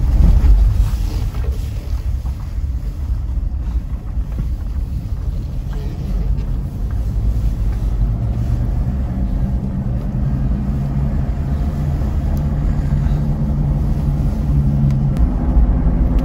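Ford Endeavour SUV driving on a mountain road: a steady low rumble of engine and tyres. A steady engine hum becomes clearer in the second half.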